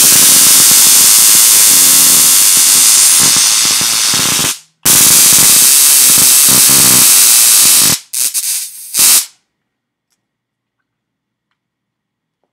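Handheld VIPERTEK rechargeable stun gun arcing between its electrodes: a loud, harsh electric crackle held for about four and a half seconds, a brief break, another three seconds, then two short bursts before it stops.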